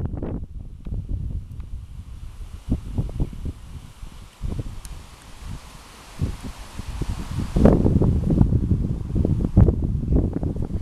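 Wind buffeting the microphone in uneven gusts, a low rumble that eases in the middle and is loudest over the last two or three seconds.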